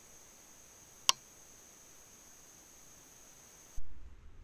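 Faint night ambience from a trail camera's microphone: steady hiss with a thin high-pitched hum and one sharp click about a second in. Near the end the sound jumps suddenly to a louder low rumble as a different camera's recording begins.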